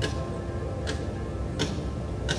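Soft background music of sustained, held tones with a light tick recurring a bit more than once a second.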